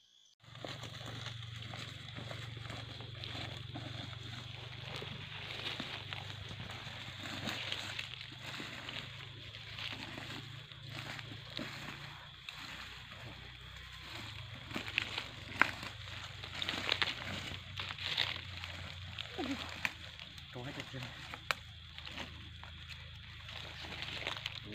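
Footsteps moving through dry leaf litter and undergrowth, with rustling and sharp snaps of twigs that come more often in the second half, over a steady high-pitched hum.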